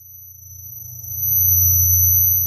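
Synthesized logo-intro sound effect: a deep bass tone swelling up over about a second and a half and then holding, with a thin high-pitched whine held above it.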